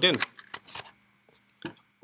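A USB cable being handled and plugged in: a few short clicks and rustles.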